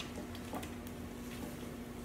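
Rice and frozen mixed vegetables sizzling faintly in an oiled electric frying pan, with a few light ticks as a spatula stirs them. A steady low hum runs underneath.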